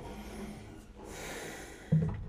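A long breath out through the nose about a second in. Just before the end comes a thump as the Gibson J-200 acoustic guitar is lifted and set down after the song.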